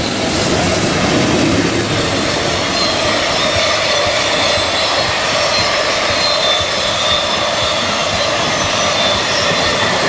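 A freight train of container flatcars rolling past behind an EH500 electric locomotive: a loud, steady rumble and rattle of wheels on rail, with a thin high wheel squeal over it.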